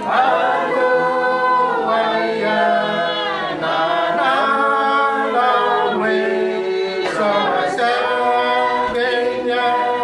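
A congregation singing a hymn a cappella in unison and harmony with no accompaniment, a new phrase beginning right at the start after a short breath. The notes are sustained and step from one pitch to the next about every second.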